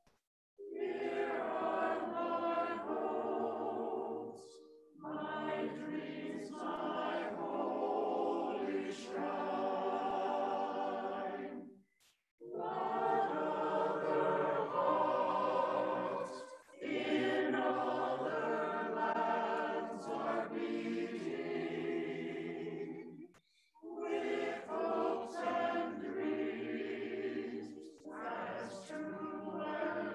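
Mixed choir of men's and women's voices singing a hymn, in phrases of several seconds broken by brief pauses.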